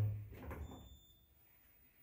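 Faint short high beep from an Orona lift's car-operating panel, about half a second in, acknowledging a floor-button press; after it, near silence in the car.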